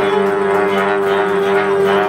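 Amplified electric guitar played live: one loud note held steady as a drone, with higher tones above it wavering up and down in pitch.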